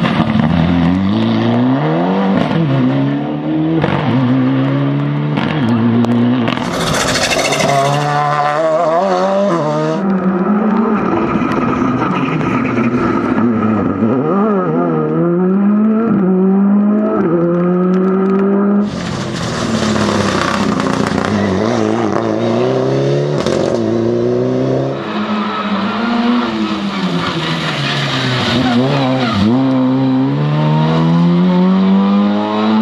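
Several rally cars, among them a Mitsubishi Lancer Evolution, a Škoda Fabia R5 and an Opel Adam, driven hard one after another on a wet road, their engines revving up and dropping back again and again through gear changes. Stretches of loud hiss from the tyres throwing up spray run alongside the engines.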